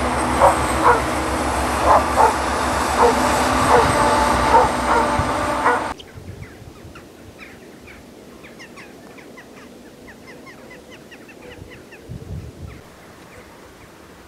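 Heavy road traffic making a loud steady low noise, with a dog barking repeatedly over it. About six seconds in the sound cuts off abruptly to a much quieter background of faint high chirps, with a brief low rumble near the end.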